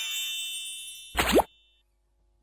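Cartoon sound effects: a sparkling chime run that rises in pitch step by step and fades out, then a short pop with a quick upward swoop in pitch, the loudest moment, about a second in.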